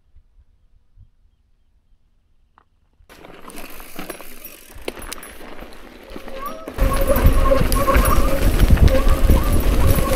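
Near silence at first. Then, from about seven seconds in, a mountain bike descending a rough dirt singletrack: loud wind rumble on a helmet-mounted camera's microphone, with the bike rattling and clattering over the trail.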